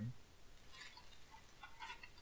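Faint handling noise of plastic toys and a plastic bag: two short bursts of rustling and clicking, about a second in and again near the end.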